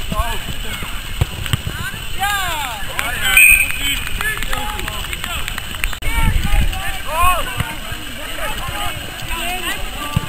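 Football players shouting and calling to one another across the pitch during play: many short, scattered calls from several voices, none of them clear words.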